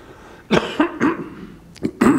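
A man coughing into his fist, twice, about half a second apart.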